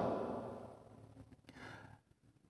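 The end of a man's word fading away in a small room, then a faint intake of breath about a second and a half in.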